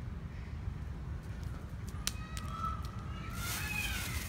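Low, steady outdoor background rumble, with a single click about two seconds in and a faint thin whistling tone near the end.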